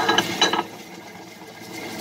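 Tabletop wet grinder running, its stone roller turning in the drum to grind soaked urad dal. A few sharp knocks come in the first half second, then the run settles into a steady, quieter mechanical sound.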